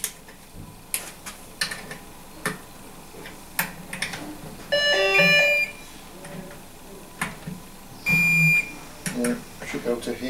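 Digital torque wrench ratcheting in short clicking strokes as cylinder-head nuts are tightened, with two electronic beeps, one about a second long about five seconds in and a shorter one near eight seconds. The beeps signal that the set torque of 5 lb-ft has been reached on a nut.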